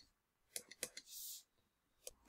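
Near silence with a few faint, short clicks about half a second to one second in, followed by a brief soft hiss.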